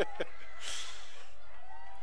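A man's laugh trailing off in a couple of short breathy chuckles, then a soft exhale close to the microphone.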